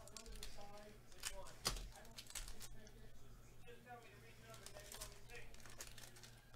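Foil trading-card pack being handled and torn open, with crinkling and a sharp crackle about a second and a half in, under a faint low voice.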